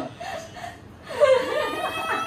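People chuckling and laughing: a brief lull, then laughter picks up again a little over a second in.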